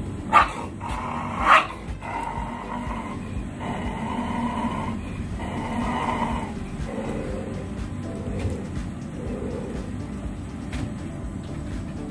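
Two sharp dog barks, about half a second and a second and a half in, followed by background music.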